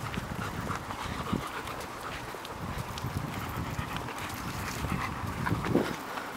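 A shepherd dog panting as it walks on a leash, with footsteps on a sandy dirt track. A louder knock comes near the end.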